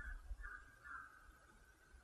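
Near silence, with three faint short calls at one pitch, about half a second apart, dying away after the first second.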